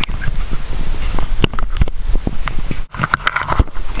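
Handling noise: irregular knocks and clicks over a low rumble, with a sudden brief break about three seconds in.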